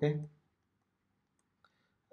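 A few faint, short clicks of a stylus tapping on a drawing tablet after a spoken "okay"; otherwise near silence.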